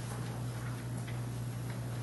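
Room tone: a steady low electrical hum under a faint hiss, with a few faint ticks.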